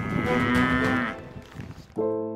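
A cow mooing once, a single call lasting about a second.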